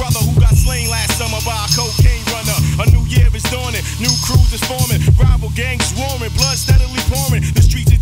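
Hip hop track: a rapper's verse delivered over a heavy bass line and a steady drum beat.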